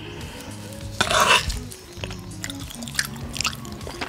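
Background music with steady sustained notes. About a second in there is a brief loud scraping burst as a metal spoon scoops takoyaki from a small wooden dish, followed by a few faint clicks.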